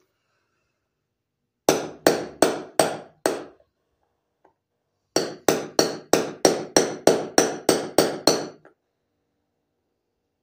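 Hammer blows knocking a new ball bearing into a lawn mower wheel hub: five quick strikes, a pause of about two seconds, then a run of about a dozen more at roughly four a second, each with a short ring.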